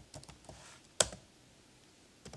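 Computer keyboard typing: a few soft keystrokes, then one sharper, louder click about a second in.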